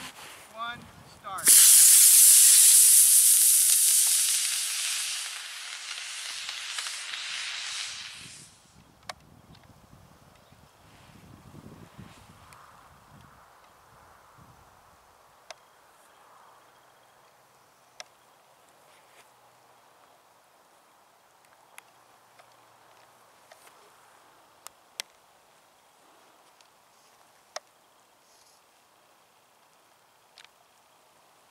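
A 24 mm model rocket motor ignites with a sudden loud hiss about a second and a half in, launching the Regulus rocket glider. The hiss fades steadily as the glider climbs away and stops about seven seconds later. Afterward there are only a few faint sharp clicks.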